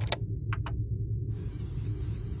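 Compact CD player: a few light clicks as the disc is seated and the player engages, then a steady high whir from the disc spinning up, starting about a second and a half in, over a low steady hum.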